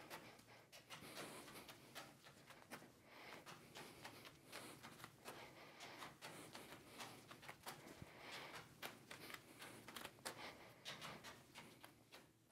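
Faint soft pats of juggling balls landing in the hands, several catches a second in an uneven run, over near-silent room tone.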